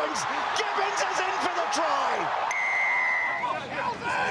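Stadium crowd noise under an excited commentator's voice, then a single steady whistle blast about a second long, a little over halfway in, typical of a referee's whistle stopping play at a ruck.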